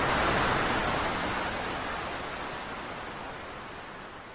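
Ocean surf: a steady rush of breaking waves, loudest at first and fading out gradually.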